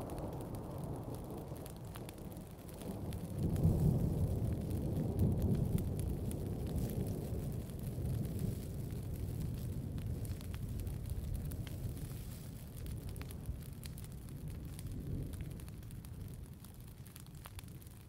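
A low, noisy rumble that swells about three seconds in, then slowly dies away.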